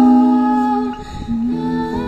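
A man and a girl humming a wordless melody in long held notes, accompanied by acoustic guitar. The sound dips briefly about a second in before new notes are taken up.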